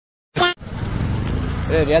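Dead silence, then an abrupt start with a brief clipped voice fragment, followed by a steady low rumble of background noise; a man's voice begins near the end.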